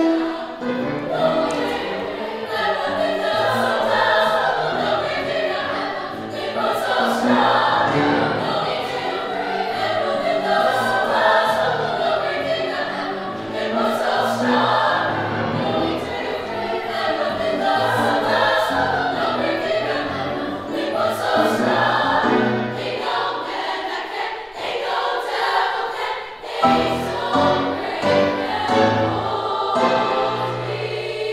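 Treble (girls') choir singing a gospel song with grand piano accompaniment, the phrases swelling and falling every few seconds; the piano's bass drops out briefly a few seconds before the end and then returns strongly.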